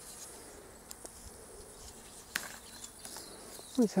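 Insects chirring steadily at a high pitch, with a couple of light clicks in the middle.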